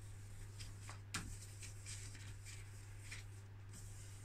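Faint scuffing of wet 2000-grit sandpaper rubbed by hand in small circles over the lacquered wooden veneer of a Jaguar Mk 2 top roll, flatting the lacquer to take out swirls left by machine sanding. A steady low hum runs underneath, with one sharper tick about a second in.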